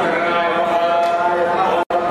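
Hindu priest chanting mantras into a handheld microphone, a man's voice on long, held pitches. The sound cuts out abruptly for a moment near the end.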